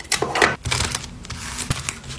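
Clear plastic packaging crinkling, with irregular quick clicks and taps as small packed items such as washi-tape rolls are handled by hand.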